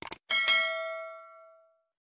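Subscribe-button sound effect: a quick double mouse click, then a bell struck once and ringing out, fading away over about a second and a half.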